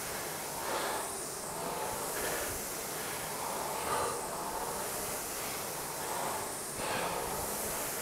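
A rower breathing hard after a fast burst, a few breaths swelling over the steady air whoosh of a Concept2 rowing machine's fan flywheel and a room fan.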